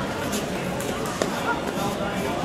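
Background chatter of many voices echoing in a large sports hall, with a couple of short knocks.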